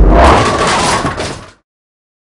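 Bowling ball crashing into the pins, with a heavy hit and then pins clattering. It cuts off suddenly about a second and a half in.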